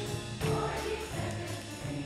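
Student choir singing with accompaniment, over a steady percussive beat.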